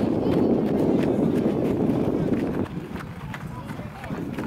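Outdoor ambience at a youth soccer match: distant children's and spectators' voices over a dense noise, which drops away sharply about two-thirds of the way through.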